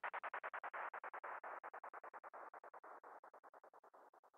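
The outro of a UK bounce dance track: a hissy noise chopped into rapid, even pulses, about nine a second. It grows quieter and duller as it fades out.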